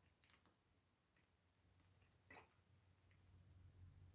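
Near silence broken by a few faint, short clicks, the clearest a little over two seconds in: Pop Rocks candy popping in a mouth.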